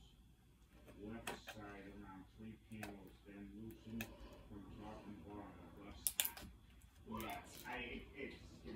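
Sharp clicks and crackles of fingers picking at a hard-to-open plastic CD package, the loudest a quick cluster about six seconds in, over faint voices talking in the background.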